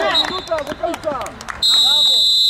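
Players shouting, then near the end a referee's whistle blown once, a steady high tone about a second long.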